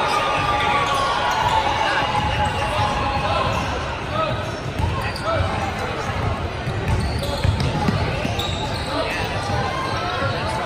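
Indistinct voices of players and spectators in a gym, with a basketball bouncing on the hardwood floor now and then.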